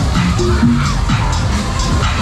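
Loud electronic dance music with a steady beat, played over a fairground ride's sound system.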